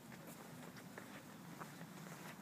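Near silence: faint background hiss with a few soft ticks.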